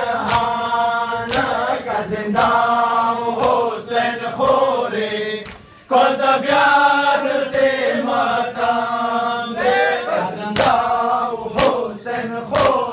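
A group of men chanting a noha, a Muharram mourning lament, with sharp hand strikes on the chest (sina zani) landing roughly once a second between the lines. The chanting breaks off briefly about halfway through, then picks up again.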